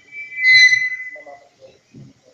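Public-address microphone feedback: a single high-pitched squeal that swells up and fades away within about a second and a half.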